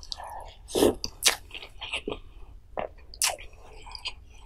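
Close-miked eating sounds of a mouthful of spicy pollack roe soup: the spoon going into the mouth and then wet chewing, with several sharp mouth smacks and clicks, the loudest about a second in.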